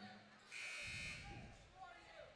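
Gym scoreboard buzzer sounding once, a steady electronic tone lasting about half a second, signalling a substitution at the scorer's table.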